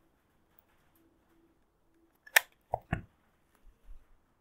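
A hot glue gun being set down on a workbench: one sharp click, then two duller knocks in quick succession a little over two seconds in, followed by a couple of faint taps near the end.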